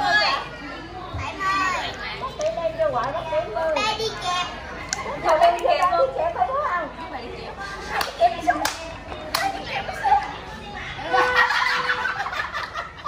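Lively overlapping voices of adults and a child talking and laughing, with a few sharp clicks about two-thirds of the way through.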